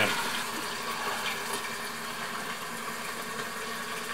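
Kupaty sausages sizzling in a covered frying pan on the stove, a steady even hiss.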